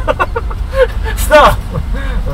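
People laughing inside a moving Kia truck's cab, over a steady low rumble of engine and road noise.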